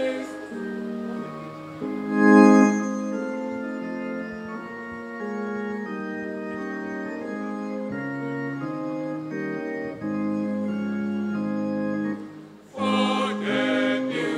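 Organ playing a slow interlude of sustained chords that change every second or two, loudest about two seconds in. Near the end it falls away briefly and the choir comes back in singing.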